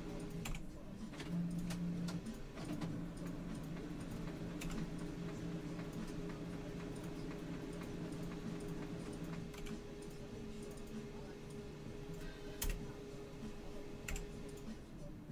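Typing on a computer keyboard: scattered, faint key clicks over a steady low hum.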